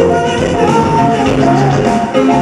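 Live rock band playing, with electric guitars.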